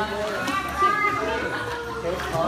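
Indistinct voices of children and adults chattering at a swim class, with a louder, higher child's voice about a second in.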